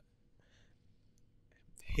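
A pause in conversation, close to silence, with a faint breathy sound about half a second in. A person starts speaking near the end.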